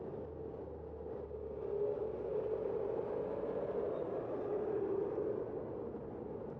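Street traffic at an intersection: a city bus driving across and away, then cars passing. It makes a continuous droning rumble that grows louder in the middle.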